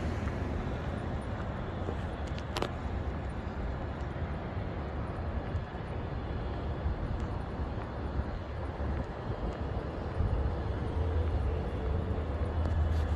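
Outdoor urban ambience: a steady low rumble of wind and road noise that grows louder near the end, with one sharp click about two and a half seconds in.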